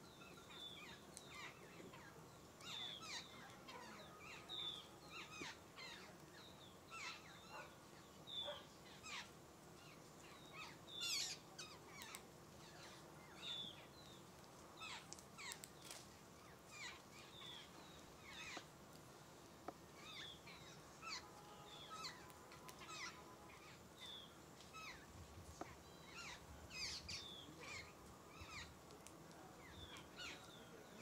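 Small birds chirping faintly: many short, separate calls scattered throughout, with one louder call about eleven seconds in.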